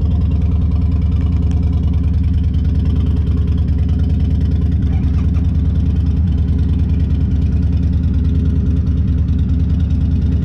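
Suzuki Burgman maxi-scooter engine idling steadily, with no revving.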